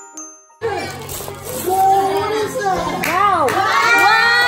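A few bell-like music notes, then an abrupt cut about half a second in to children's high, excited voices rising and falling in pitch, over room noise.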